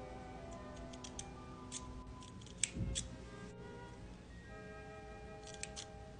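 Scissors snipping through long hair: a few faint, short cuts in two small groups, about a second in and again near the end, over soft background music with held notes.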